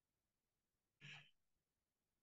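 Near silence on a video call, broken about a second in by one brief, faint breathy sound: a short sigh.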